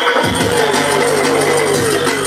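Electronic dance music from a DJ set, played loud through a sound system. Deep bass drops in about a quarter of a second in, under a repeating falling synth line.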